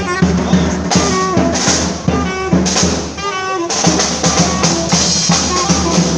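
A small marching street band playing live: bass drum and snare drums keep a steady beat under a brass and saxophone melody. The horns drop out about two-thirds of the way through and the drums carry on alone.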